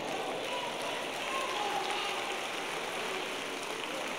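Steady, even hiss of room noise in a church sanctuary during a pause in the preaching, with no clear single event.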